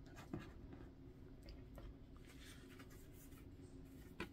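Faint rustling and scraping of oracle cards being laid down and slid across a table, then picked up: a few soft brushes of cardstock, the first the clearest, in an otherwise near-silent room.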